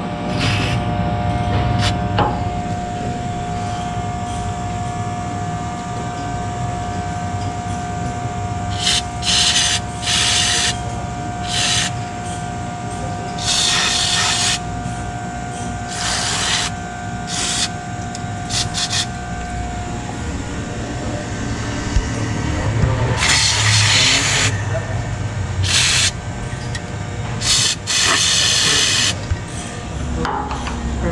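Aerosol can of white lithium-soap grease spraying through its straw nozzle in about a dozen short hisses, mostly under a second, the longest lasting over a second late on, over a steady low background hum.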